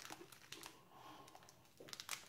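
Near silence: a few faint, light clicks and crinkles in the first second, with room tone.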